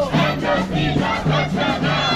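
Crowd of marchers chanting a slogan together, loud and rhythmic.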